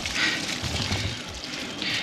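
Bicycle tyres rolling over dry fallen leaves on a path, a steady rustling noise, with two brief louder hisses, one just after the start and one near the end.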